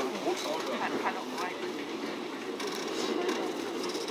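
Steady running noise of an electric train heard from inside the carriage, with faint voices of passengers talking.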